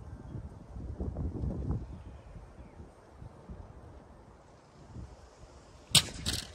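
Wind on the microphone, then just before the end one sharp, loud crack as a plastic Kenmore vacuum powerhead is smashed.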